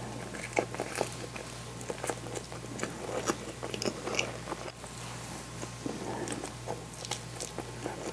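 Close-miked chewing of a mouthful of natto rice, with many small irregular mouth clicks and crunches.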